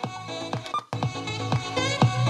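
Music with a steady beat playing back from a Panasonic RQ-SX30 cassette Walkman as its sound-select button is pressed to switch the S-XBS bass boost off. The music cuts out for a moment just before a second in, then carries on.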